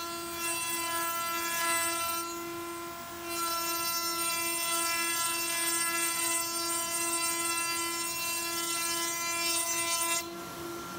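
A table-mounted router running with a steady high-pitched whine as an oak door-frame board is fed past the cutter to cut the groove for a weather strip. The cutting noise thins briefly about two seconds in, then picks up again until near the end.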